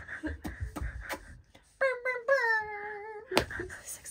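A woman's voice singing one held note, about a second and a half long, that dips slightly and then wavers, after a few soft clicks and knocks of handling; a sharp click follows it.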